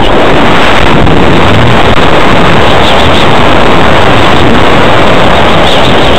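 Loud rushing wind on a rocket's onboard camera microphone during flight and parachute descent. A warbling electronic beep sounds briefly about halfway through and again near the end.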